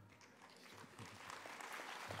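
Audience applause, starting faintly and growing steadily louder.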